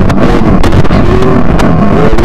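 Industrial noise music, loud and dense: a constant low rumble with wavering synthesized tones above it and scattered sharp clicks.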